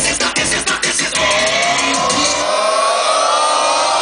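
Loud live electronic music: a beat for about the first second, then a sustained synth-and-noise wash with sliding pitches, the bass dropping out about halfway through.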